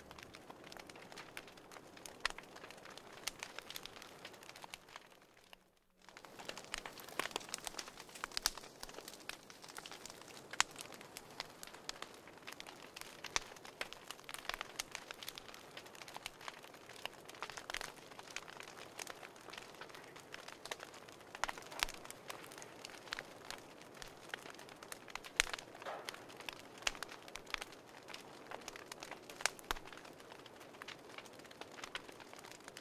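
Fire crackling: irregular snaps and pops over a soft hiss. It fades out about five seconds in and starts again about a second later.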